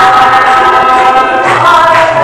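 A group of voices singing a devotional song, holding one long note that changes pitch near the end.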